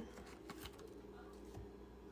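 Faint soft plops of strawberries dropped into a bowl of salt water, a few small clicks over a low steady hum.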